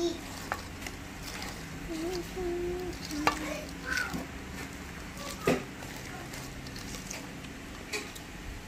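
A utensil stirring thick brownie batter in a stainless steel bowl as flour is mixed into the chocolate. The stirring scrapes softly, with a few sharp clicks of the utensil against the bowl.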